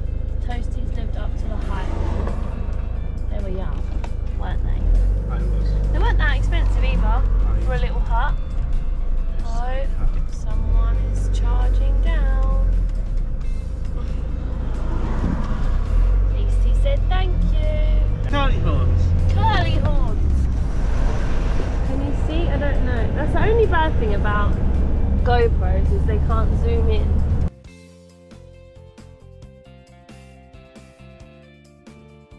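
Campervan cab on the move: a loud, steady low rumble of engine and road, with music and voices over it. It cuts off suddenly near the end.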